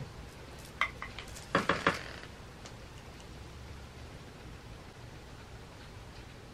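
A few brief clicks and knocks from objects being handled in the first two seconds, then quiet room tone.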